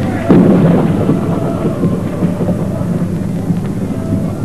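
A thunderstorm sound effect over the concert sound system: a sudden loud thunderclap about a third of a second in, then continuing rumble and rain-like noise.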